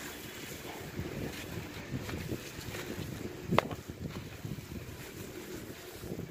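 Crumbly lumps of charcoal being crushed by gloved hands on a hard floor: gritty crunching and crumbling with many small crackles, and one sharp crack about three and a half seconds in.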